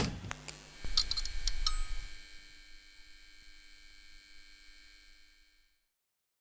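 A sharp hit, then a few clicks and a low rumble over the next two seconds, followed by a long ringing of several high tones that fades away and stops shortly before the end.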